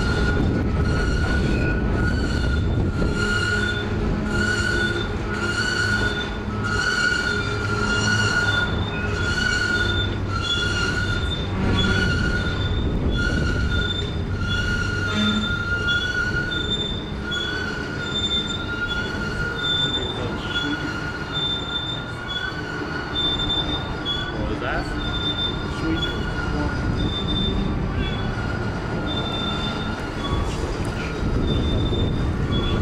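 Covered hopper cars of a slow freight train rolling past, their steel wheels squealing with high ringing tones that pulse about once a second, over a steady rumble.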